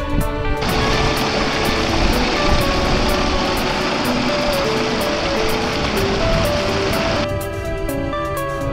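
Background music with a melody throughout. Under it, water rushes down a narrow channel as a steady hiss, starting about half a second in and cutting off suddenly near the end.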